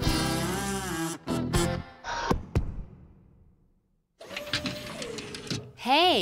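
Cartoon sound effects of a toy assembly machine being worked: a loud wavering mechanical whir with clicks and knocks that dies away to silence about halfway through. After the silence comes a steady tone, and near the end a tone that swoops up and down.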